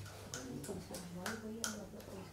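Several sharp, irregularly spaced clicks over faint background voices.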